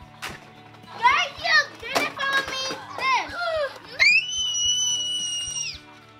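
Young children's high-pitched voices and squeals while playing, with a held high tone lasting nearly two seconds from about four seconds in.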